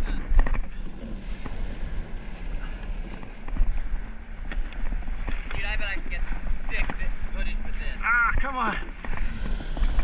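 Water lapping and rushing along a paddleboard's hull as the board moves through light chop, with wind on the microphone. Brief indistinct voices about five and a half and eight seconds in.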